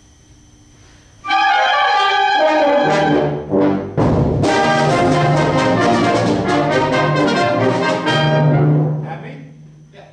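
A school concert band, brass to the fore, comes in together loudly about a second in on the conductor's beat. It plays a short passage with a brief break around the middle, then ends on a held low note that dies away in the room's echo.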